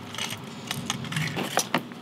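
A clear plastic clamshell pack holding a hooked jerkbait being handled: a scatter of light plastic clicks and small rattles, with a few sharp ticks close together about a second and a half in.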